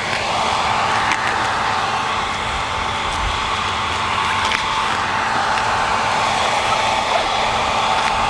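Handheld electric blow dryer running steadily, blowing hot air onto a vinyl wrap to soften it for peeling, with a constant motor whine over the rush of air.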